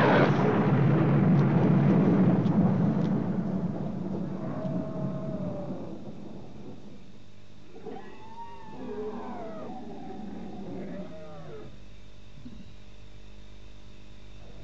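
Animal-like creature cries: a loud rough roar that fades away over the first five or six seconds, then a few shorter wails that rise and fall in pitch, between about eight and eleven seconds in.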